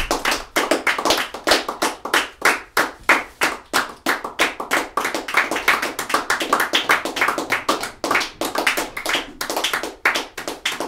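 Alto saxophone played by its keys alone: a fast, irregular clatter of keys and pads slapping shut, several pops a second with the pitch shifting from pop to pop.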